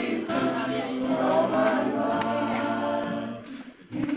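A cappella choir singing in several voices. The singing drops away briefly near the end before the voices come back in.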